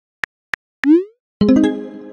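Texting-app keyboard clicks, then a short rising 'message sent' tone a little under a second in. About a second and a half in, a loud musical chord strikes and rings on, fading slowly, as a dramatic sting.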